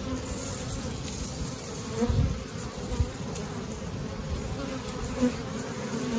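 Honeybees buzzing steadily from an open hive, a low continuous hum, with a couple of soft knocks partway through.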